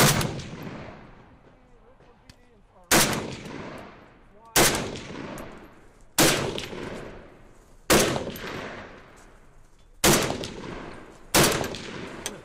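Seven single shots from a semi-automatic Palmetto State Armory AK-104, a short-barrelled 7.62×39 AK pistol, fired one at a time about one and a half to two seconds apart. Each sharp report trails off in a long echo.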